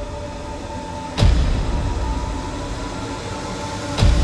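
Dramatic background music: a sustained droning bed with steady held tones, struck about a second in by a single heavy boom-like hit that dies away slowly.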